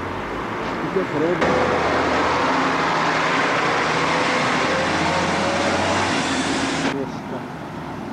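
A car passing close by on the street, heard as a steady stretch of engine and tyre noise. It starts abruptly about a second and a half in and cuts off about a second before the end.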